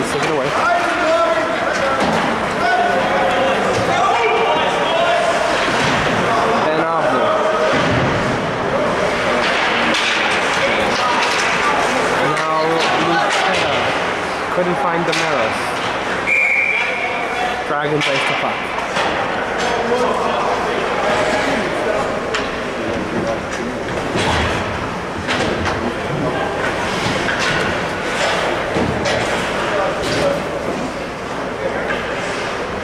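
Indistinct voices of players and spectators in an ice rink during a hockey game, with scattered thuds and slams of pucks, sticks and bodies against the boards and glass.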